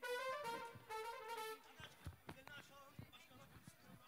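A short high-pitched call of two or three held notes in the first second and a half, followed by a few faint sharp taps.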